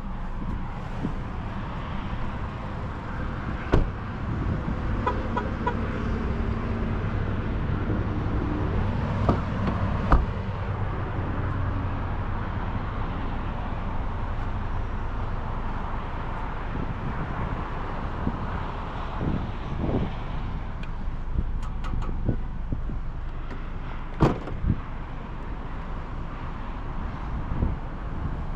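Steady low vehicle hum, with a few sharp knocks scattered through it, the loudest about ten seconds in, and a brief run of faint short beeps about five seconds in.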